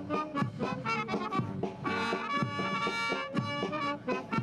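Military brass band playing a march.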